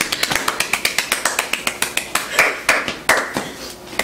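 Hands clapping quickly, about six to eight sharp claps a second, stopping about three and a half seconds in.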